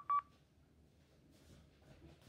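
Two short, identical electronic beeps in quick succession from a recorded phone call played back through a smartphone's speaker, then only faint hiss where the recording's audio drops out, which the speaker describes as the call audio being cut off again and again.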